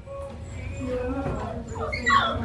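Puppies whimpering faintly, with a short rising whine near the end.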